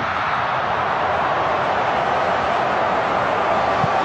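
Steady noise of a large football stadium crowd, many voices blended into an even roar with no single voice standing out.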